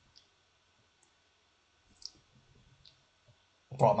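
A mostly quiet room with a few faint, short, high clicks about a second apart and some soft low bumps; a man's voice starts loudly near the end.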